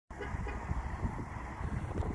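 Steady low rumble of outdoor background noise, with a few small bumps.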